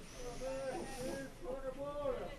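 Voices calling out across a football pitch during play, with a thin high-pitched whine in the first second.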